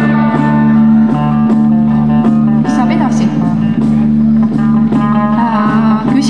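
Folk music from a small ensemble: a steady low drone is held throughout, with a melody line of short, gliding notes above it.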